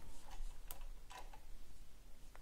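A few light, quiet clicks and soft rustling as hands push quilting pins through cotton fabric to pin curved quilt pieces together.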